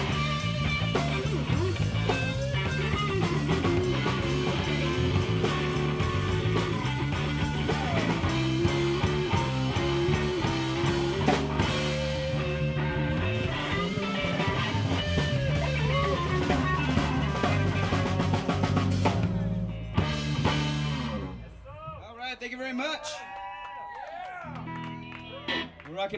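Live rock band (electric guitar, bass guitar and drum kit) through PA speakers, ending a song about 21 seconds in. A man's voice follows over the quieter aftermath.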